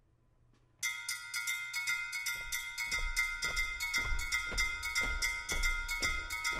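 Brake drum (the steel band's 'iron') struck with a metal beater in a steady fast rhythm, about five strokes a second, starting suddenly about a second in and ringing at the same few pitches on every stroke. A bass drum joins on the beat about two seconds later, at roughly two beats a second.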